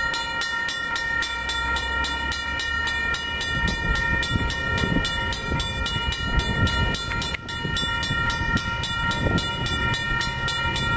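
Amtrak passenger train approaching on the line; the low rumble of the locomotive and wheels grows stronger from about three and a half seconds in.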